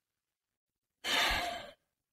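A single breathy sigh, a long exhale lasting under a second, about a second in, from a man pausing to think before he answers a question.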